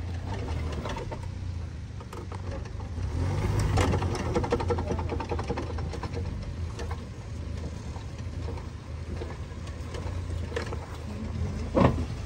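Suzuki Jimny's engine running at low revs as it crawls up a steep dirt slope, with its tyres crunching and crackling over dirt and stones, loudest about four seconds in. A sharp knock near the end.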